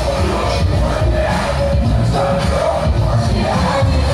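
Loud amplified dance music with strong bass, played for pole dancers on top of Jeeps, with crowd noise underneath.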